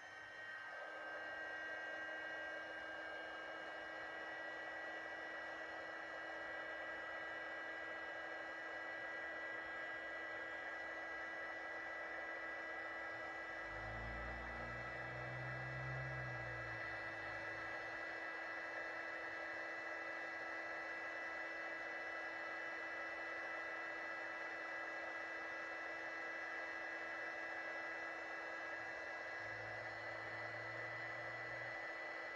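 SEEKONE 350W mini heat gun running steadily: its small fan motor gives a steady whine over a rushing hiss of hot air blown onto a solder-seal wire connector. A brief low rumble comes about fourteen seconds in.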